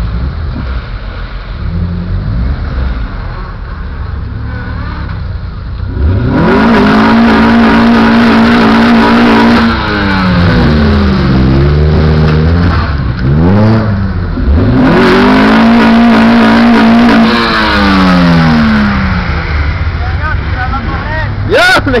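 Car engine revved hard during a burnout, the tires spinning in the smoke. After a lower rumble it climbs about six seconds in and holds near the top of its revs with a high hiss over it, then drops back through a few quick blips. It climbs and holds again and falls away toward the end.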